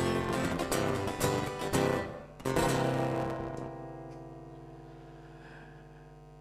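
Acoustic guitar strumming the closing bars of a song, then one last chord struck about two and a half seconds in and left to ring out, fading slowly.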